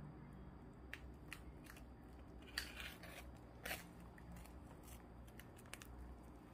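Faint, scattered crisp crackles and snaps from the blistered crackling skin of a roast lechon pork belly roll as fingers press and pull at it, with a small cluster of louder cracks a little before the middle.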